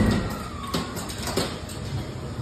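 A haunted-house scare figure's recorded scream trailing off and falling in pitch, with three sharp knocks or clunks about two-thirds of a second apart.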